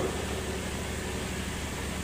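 Steady hum and hiss of a pedestal electric fan running, heard through a microphone.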